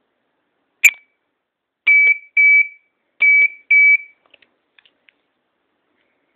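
Small handheld electronic gadget beeping: one short beep, then two pairs of longer beeps, each about a third of a second at one steady high pitch, followed by a few faint clicks.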